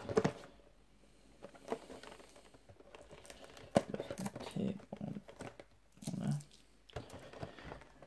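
Funko Pop boxes (cardboard with a plastic window) handled by hand: crinkling and rustling with scattered taps and knocks, one sharp knock a little under four seconds in.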